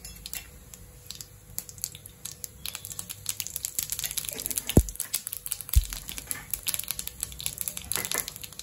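Cumin seeds crackling in hot oil in an iron kadai, with fine pops that grow denser after a couple of seconds as the oil heats. There are two brief low thumps near the middle.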